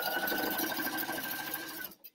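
PFAFF sewing machine running steadily, zigzag-stitching elastic onto netting, with a steady motor whine over fast needle ticking. It stops abruptly just before the end.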